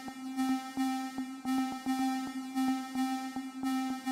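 Electronic synthesizer music playing back from MIDI-driven instruments in Bitwig: a steady held synth tone with a quick, even run of short notes over it, about three to four a second.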